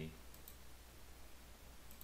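Faint computer mouse clicks over a low steady hum: two close together about half a second in and one more near the end.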